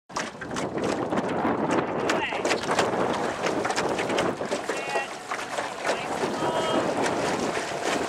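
Water splashing and churning under many dragon boat paddles as a crew strokes together, in an uneven run of splashes, with wind on the microphone and a few brief shouted voices.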